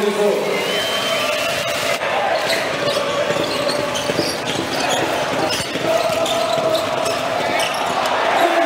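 Live court sound of a basketball game in an arena: a ball dribbled on the hardwood and sneakers squeaking, over a steady crowd din with voices.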